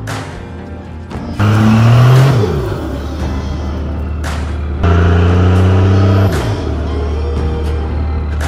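Lifted Dodge Ram's diesel engine revving hard twice, each rev held about a second before the pitch drops away, while it belches black smoke. Background music with a beat plays under it.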